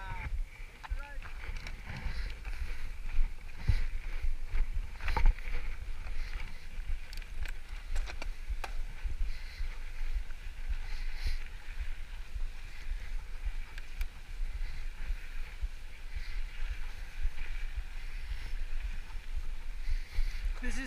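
A mountain bike rolling fast down a gravel dirt track: wind buffeting the handlebar-mounted camera's microphone and tyres running over loose gravel, with scattered sharp knocks and rattles from the bike over bumps, the loudest about five seconds in.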